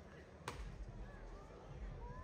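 A pitched baseball popping once into a catcher's mitt, a single sharp smack about half a second in, over faint crowd voices.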